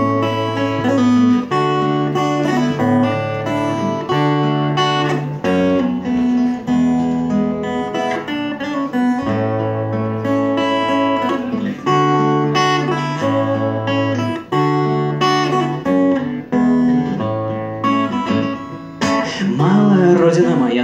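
Amplified acoustic guitar strummed through a repeating chord progression, changing chord about every second and a half, as a song's instrumental intro.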